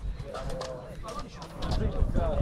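Voices of players and spectators calling and talking at a distance, over a steady low rumble.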